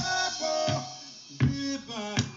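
A demo song playing back from Propellerhead Record 1.5: pitched instrumental music with strong note hits roughly every 0.7 seconds, each note ringing on after its attack.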